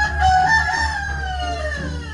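A rooster crowing: one long call of about two seconds that falls in pitch at the end.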